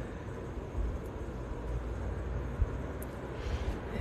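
A low, steady rumble of background noise with no speech, and one faint tick about three seconds in.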